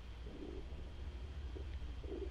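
A soft, low coo, as of a distant dove, about half a second in, with a fainter one near the end, over a steady low hum of room tone.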